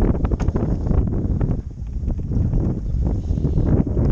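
Heavy wind buffeting the camera microphone: a loud, rough low rumble that starts suddenly, with scattered small knocks and crackles through it.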